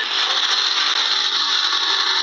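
Steady, loud hissing rush of noise inside a car, heard through a phone live stream's thin, band-limited audio.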